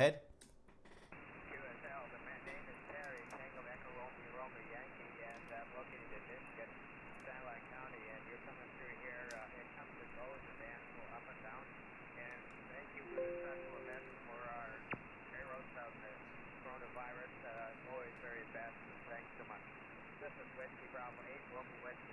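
Weak single-sideband voice of a distant amateur radio station on 40 meters, heard through the receiver: faint speech buried in hiss and squeezed into a narrow, telephone-like band, a signal copied at five and five. A short two-note steady whistle from an interfering carrier cuts in a little past halfway.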